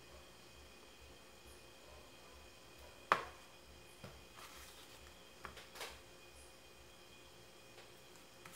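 Quiet craft-table handling: a sharp tap about three seconds in as a plastic glue tube is set down on the work board. It is followed by a few softer taps and rustles as small EVA foam hearts are pressed into place.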